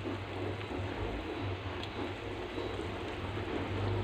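Soy-sauce and onion sauce simmering and sizzling around fried tilapia steaks in a pan: a steady hiss, with a low steady hum underneath.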